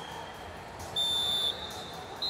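A referee's whistle blown once: a single shrill, steady blast of about half a second, about a second in, stopping the wrestling action.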